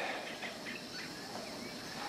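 Faint jungle ambience: a steady soft hiss with a few small bird chirps.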